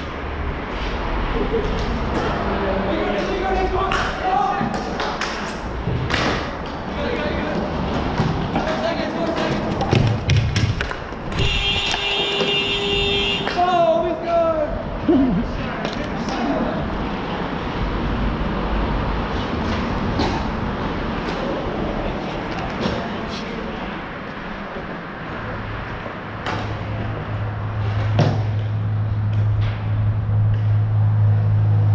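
Rink activity: scattered sharp knocks and clacks of hockey sticks on the sport-court floor, with players' voices in the background. About eleven seconds in, a high-pitched tone lasts about two seconds, and a steady low hum comes in near the end.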